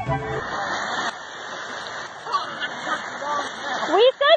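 Background music cuts off about half a second in, followed by a steady rushing outdoor noise with faint voices beneath it.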